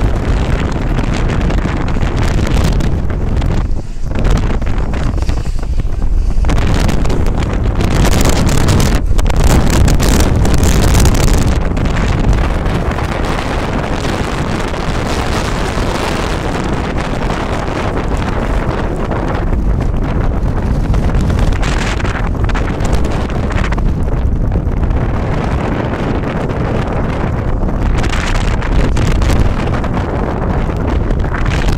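Strong, gusty dust-storm wind buffeting the microphone: a loud, continuous rumble of wind noise, strongest in gusts from about eight to eleven seconds in.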